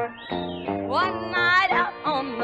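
Country band playing an instrumental break between sung verses. A twangy lead instrument slides and swoops up and down in pitch over the band's plucked notes.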